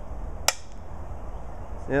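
A tossed rock landing with a single short, sharp clack about half a second in.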